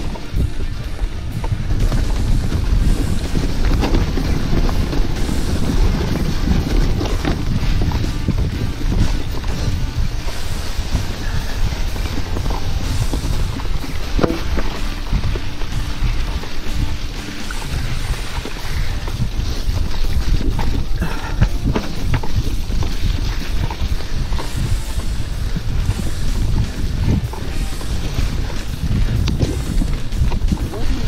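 Mountain bike ridden over a rough forest trail, picked up by the rider's action camera: wind rushing over the microphone and the bike rattling over bumps, with a few sharp knocks.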